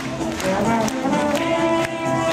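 Live Dixieland jazz band playing, brass to the fore, with regular sharp beats and the audience clapping along.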